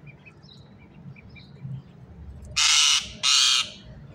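Two loud, harsh squawks in quick succession from a rose-ringed (Indian ringneck) parakeet, each about half a second long, starting about two and a half seconds in. Faint short chirps come before them.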